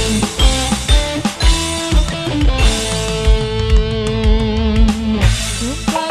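Live dangdut band playing an instrumental passage: a steady drum beat with bass, keyboard and electric guitar, and a long held lead note with a slight vibrato in the middle.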